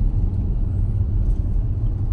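Steady low rumble of a car driving along a road, heard from inside the cabin: tyre, road and engine noise with no other event standing out.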